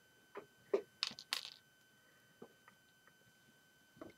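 A few light clicks and taps of LEGO plastic pieces being handled, scattered over the first three seconds, with quiet between.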